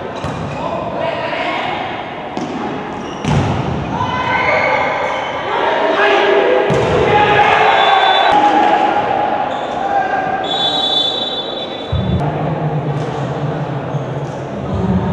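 A volleyball being struck and bouncing on a gymnasium floor, repeated sharp hits echoing in the large hall, with players' voices calling out. A short high-pitched tone sounds briefly about two thirds of the way in.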